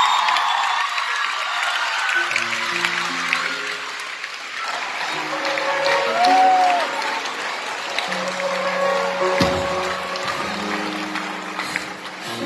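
Audience applause and cheering, easing off over the first few seconds, as a live band starts playing slow held chords about two seconds in.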